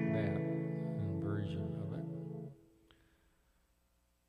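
Yamaha S90XS keyboard's guitar patch sounding a held A major chord. The chord is released about two and a half seconds in.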